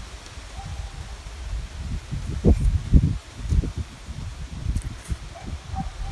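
Wind buffeting the microphone: a low, uneven rumble that swells in gusts, strongest twice about halfway through.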